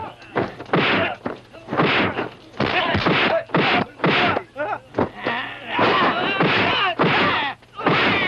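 A fist fight with a dense, irregular series of dubbed punch and strike impact effects, mixed with the fighters' shouts and grunts.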